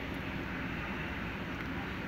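Steady background noise: an even low rumble and hiss with no distinct events.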